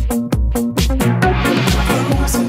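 Techno-trance DJ mix playing, driven by a steady four-on-the-floor kick drum at a little over two beats a second. A noisy wash sweeps in over the beat about a second in.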